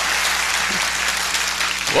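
Audience applauding steadily, with a man's voice starting just at the end.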